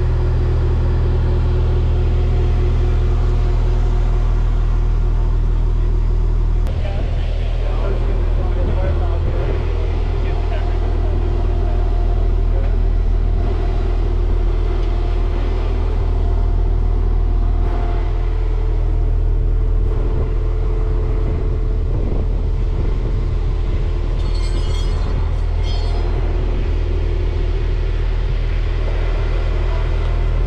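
Diesel engine of a Stryker-based Sgt Stout air defense vehicle idling, a loud steady low drone. After about seven seconds, indistinct voices sound faintly under it.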